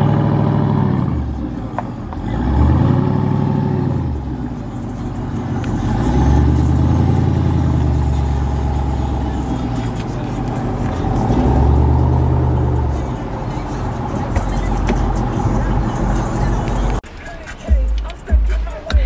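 A Jeep Grand Cherokee's engine being revved hard, its note rising and falling in pitch about four times, each rev held for a second or two.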